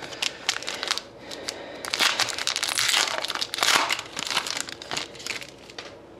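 A trading-card pack's foil wrapper being torn open and crinkled by hand. A few sharp crinkles come first, then a louder, dense spell of crinkling in the middle that dies away near the end.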